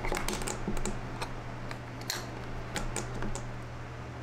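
AA batteries being pushed into the plastic battery compartment of a pair of digital night vision binoculars: a string of irregular light clicks and taps.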